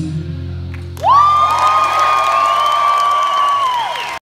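The band's final chord rings out and fades. About a second in, a loud whistle from the audience rises sharply to one high, steady note, holds for nearly three seconds and drops off near the end, over faint crowd cheering.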